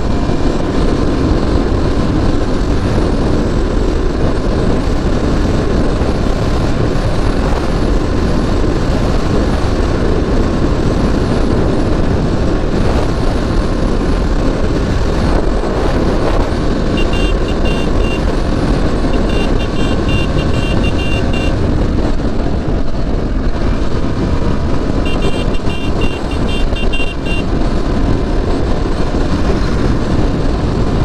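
Heavy wind noise on the microphone over the steady running of a KTM Duke motorcycle's engine at highway speed. Twice in the second half come brief runs of rapid, high-pitched beeps.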